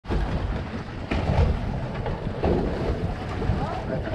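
Wind buffeting the microphone over water sloshing against a small boat's hull on choppy sea, with two sharper knocks about one and two and a half seconds in.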